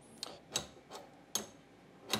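A few light metallic clicks and taps as a wrench and a small timing pulley are handled at the lathe's belt-driven spindle pulleys: about four sharp ticks spread over two seconds, the sharpest about a second and a half in.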